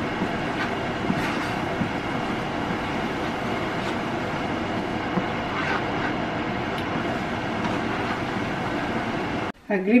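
Tomato-based curry gravy simmering in a nonstick frying pan while a wooden spatula stirs it: a steady bubbling sizzle with a few faint scrapes. It cuts off abruptly near the end.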